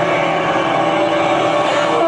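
Sustained, steady chord of concert music over a stadium sound system, heard from within the audience.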